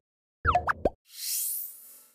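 Animated news-outro sound effects: a quick cluster of bubbly, upward-gliding pops about half a second in, followed by a bright, high rising shimmer sweep that fades out near the end.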